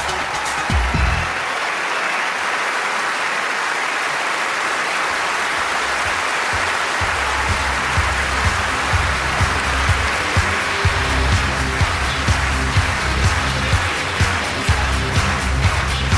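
A large theatre audience applauding, a dense, steady clapping that runs on throughout. The music's beat stops about a second in and comes back about seven seconds in, playing under the applause with a steady pulse.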